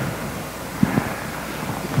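Steady background hiss of room tone in a pause between words, with a faint click about a second in.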